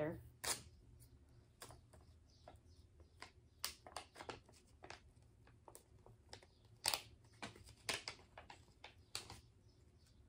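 A small package being opened and handled by hand: faint crinkles with scattered sharp clicks, the loudest about a second in, near four seconds, and around seven to nine seconds.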